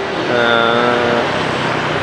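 Steady street traffic of motorbikes and cars passing on a busy city road. Near the start a man draws out a long, even-pitched "uhh" over it.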